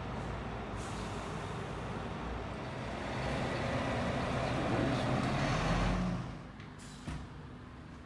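Fire engine's diesel engine running as the truck drives up close, growing louder and then dropping away just after six seconds as it stops. A brief hiss of its air brakes follows about a second later.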